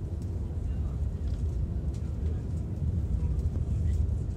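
Steady low rumble of a moving bus heard from inside the cabin: engine and road noise while it drives along.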